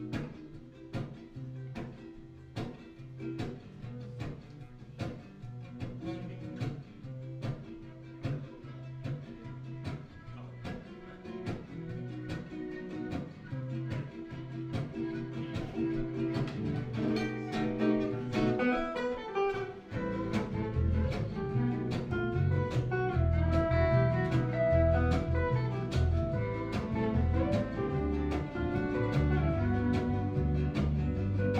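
Gypsy jazz quartet of two acoustic guitars, upright bass and violin playing an instrumental, the guitars strumming a steady rhythm. The violin comes in with a melody a little past halfway, and about two-thirds through the band plays louder and fuller, with deep bass notes.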